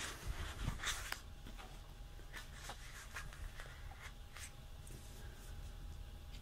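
Paper handling: the pages of a sticker book rustle and tap briefly in the first second or so as they settle, followed by faint, scattered light ticks of paper and fingers.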